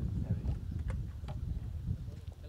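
Outdoor training-pitch sound: wind rumbling on the microphone, with several short, sharp knocks of footballs being kicked on grass.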